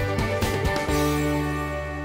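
Intro theme music: a quick beat that stops a little before halfway through, leaving a held chord ringing and slowly fading.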